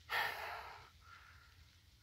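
A person's single short exhale, about a second long, fading out.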